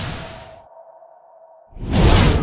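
Logo-animation whoosh effect: a whooshing sweep fades out in the first half-second, leaving a faint steady tone, then a second whoosh starts suddenly near the end.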